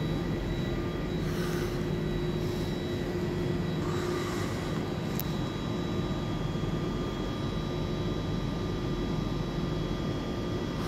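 Steady low hum and drone of an electric locomotive-hauled train standing at an underground platform, echoing in the station hall, with a few brief soft hisses and a single click about five seconds in.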